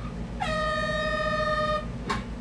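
A steady horn-like tone at one pitch, lasting about a second and a half and starting about half a second in, over a steady low hum.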